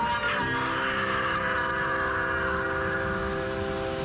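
A woman's long, hoarse scream, held for about four seconds and stopping near the end, over a sustained music chord.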